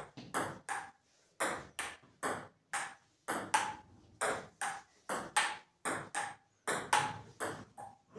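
Table tennis rally: a celluloid ping-pong ball clicking back and forth between the table top and the paddles, about two to three hits a second.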